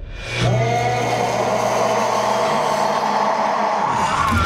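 Sustained low drone from a film trailer's soundtrack, swelling in about half a second in and stepping up in pitch about halfway through, with a higher wavering tone over it.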